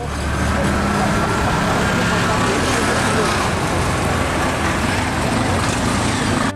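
Busy street sound: cars and mototaxis running in slow, congested traffic, mixed with the chatter of a crowd. It is loud and steady throughout.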